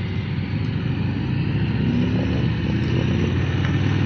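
Harley-Davidson Road Glide ST's Milwaukee-Eight 117 V-twin running under throttle as the bike accelerates out of a roundabout, its note slowly getting louder, over a steady rush of wind and road noise.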